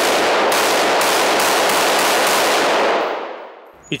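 WWSD AR-15-style rifle fired in a rapid string of shots. The reports run together in the echo of an indoor range and die away about three seconds in.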